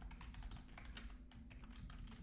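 Faint, quick, irregular keystrokes on a computer keyboard: a run of a dozen or so key clicks as code is typed.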